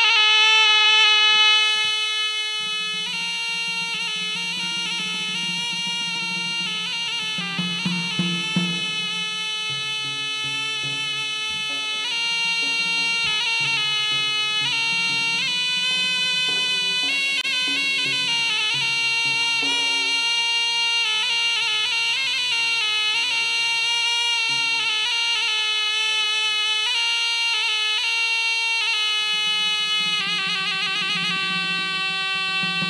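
Acehnese traditional dance music: a shrill wind instrument holds a long, drawn-out melody over frame drums, with a few louder drum strikes about eight seconds in.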